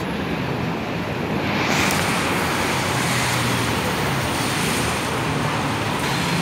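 Steady roar of city road traffic, with a hiss that swells about a second and a half in and holds.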